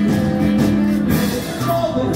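Rock music with guitar, drums and singing.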